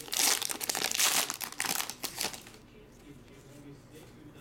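A foil trading-card pack wrapper being torn open and crinkled by hand: a dense run of crackling rustles that stops about two and a half seconds in.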